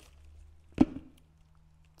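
A single dull thump of a small rubber tyre knocking against the cardboard box as it is lifted out, about a second in, over a faint steady low hum.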